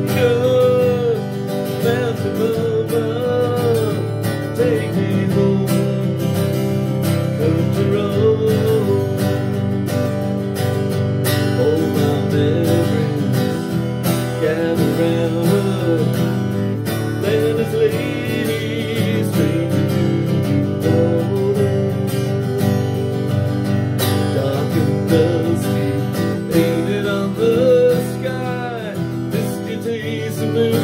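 An acoustic guitar strummed steadily, with a man's voice carrying the melody over it in phrases that come and go.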